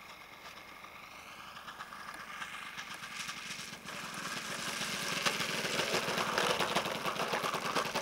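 Small engine of a radio-controlled model airplane running at low throttle after landing, growing steadily louder as the plane taxis in toward the microphone.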